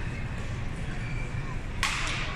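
Badminton racket hitting a shuttlecock once near the end, a sharp crack that echoes in a large hall, with short squeaks of court shoes earlier over a steady low hum.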